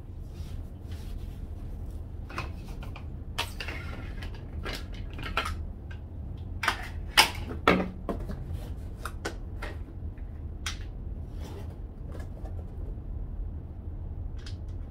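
Plastic bottles being handled on a tiled ledge: scattered clicks, knocks and rustles as the pump top is taken off a plastic pump sprayer and the cap of a concentrate bottle is opened, over a steady low hum.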